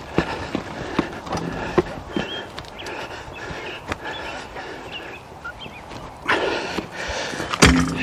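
A wheeled log splitter, its engine off, being hauled by hand over grass. There are footsteps, scattered rattles and knocks from the steel frame, and a louder clunk near the end as it is set down.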